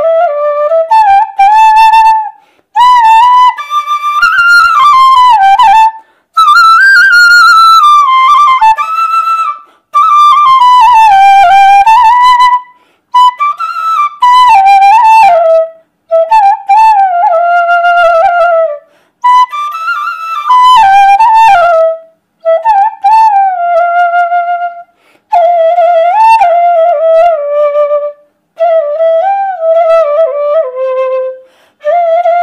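A bamboo bansuri flute played solo, close up: a slow melody in phrases a few seconds long, each broken off by a short pause for breath, with notes that slide and waver between pitches.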